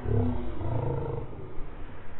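A person's low growling roar in two rough bursts, the second about a second after the first.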